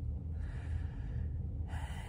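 A person drawing two audible breaths in a pause between words: one about half a second in, and a sharper, louder intake near the end, over a steady low rumble.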